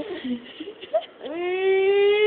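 A baby's voice: a few short soft sounds, then about halfway in a long, high, steady-pitched vocal sound that is still going at the end.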